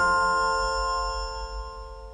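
The closing chord of a TV quiz show's segment-intro jingle: a sustained, chime-like chord ringing on and slowly fading out.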